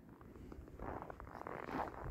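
A person moving through snow: faint crunching and rustling that starts just under a second in and grows louder.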